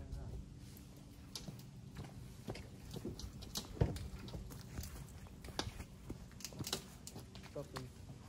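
Loaded wheelbarrow being pushed over uneven ground: irregular knocks and rattles from the tray and wheel, mixed with footsteps, the loudest knock about four seconds in. A steady low hum runs underneath.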